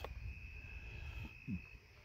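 Faint, steady, high-pitched cricket trill over a low background rumble.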